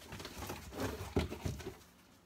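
Magazines being rummaged in a box on a bookshelf: paper rustling and a few light knocks, most of them between one and one and a half seconds in.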